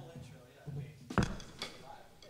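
Quiet room with a few light clicks and one sharper knock a little over a second in, the handling noise of a band at its instruments and mics, under faint low talk.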